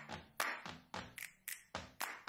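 A quick series of light, sharp taps, about three or four a second, with short gaps between them.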